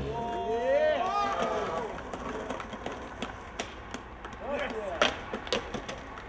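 Voices calling out, with scattered sharp clicks and knocks from skateboards on pavement; the loudest knock comes about five seconds in.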